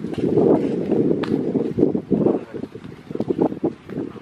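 Wind buffeting the microphone: an irregular low rumble that swells and drops in gusts.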